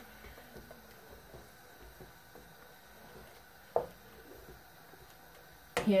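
Faint, irregular soft pops and squelches of a thick cauliflower cream sauce simmering in a steel pot, with one brief louder sound about two-thirds of the way through.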